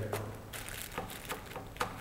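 Retractable oil immersion objective of a microscope being pushed up into its housing with folded lens paper: a few faint clicks and rustles, the sharpest near the end.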